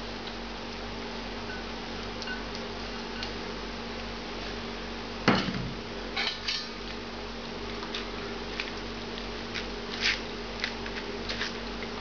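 Straining stock through a stainless steel mesh sieve into a metal bowl: one sharp metal clank about five seconds in, then lighter clinks and scrapes as a silicone spatula works the shrimp shells in the sieve, over a steady low hum.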